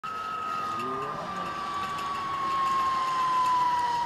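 Zip-line trolley pulleys running along the steel cable, giving one continuous whine that slowly falls in pitch and grows a little louder.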